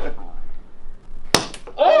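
A single sharp snap from a pull-back toy dart shooter as it fires a dart, about a second and a third in, followed by startled exclamations near the end.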